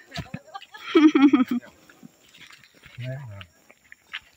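A person's short laugh, pulsing in quick beats about a second in, then a brief low falling voice sound about three seconds in.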